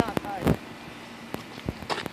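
A few scattered thumps and scuffs of footsteps on an asphalt-shingle roof, the loudest about half a second in, with short bits of voice at the start and near the end.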